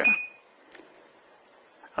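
A single short, high electronic beep from the FM transmitter's front-panel button as it is pressed, followed by quiet with one faint click.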